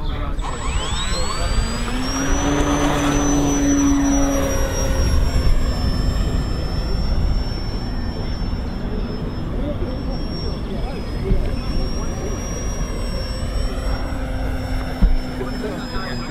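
Radio-controlled model aeroplane's electric motor and propeller running up to full power for take-off: a whine that rises quickly over the first two seconds, then holds near steady with slight wavering as the plane climbs away.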